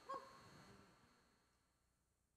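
Near silence: a faint, short pitched blip just after the start, then dead silence.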